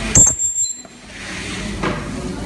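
A sharp clink just after the start, ringing briefly on a thin high note that dies away within about half a second.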